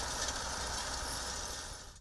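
Tractor pulling a seed drill across a field: a steady mechanical noise from the engine and drill, with a low rumble underneath, fading out near the end.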